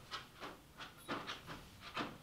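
Faint, irregular rustling and swishing of a fleece-lined hunting hoodie as the wearer turns around and swings his arms out wide.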